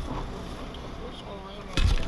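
Low rumble of a six-wheeled Jeep TJ driving on a sandy dirt track, heard from inside the cabin, with a loud thump near the end.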